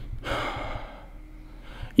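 A man's breathy exhale, like a short sigh, in the first second, then only low background room noise.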